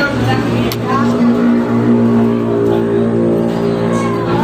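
A motor vehicle engine running at a steady pitch for a couple of seconds, under background voices.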